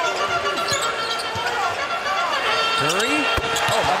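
Game sound from a basketball arena: a basketball bouncing on the court amid voices and arena noise, with a sharp knock a little before the end.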